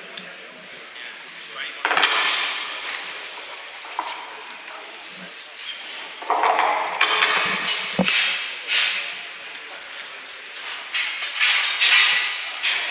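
Indistinct voices of people talking in a large hall, coming and going in bursts, with a few sharp knocks in between.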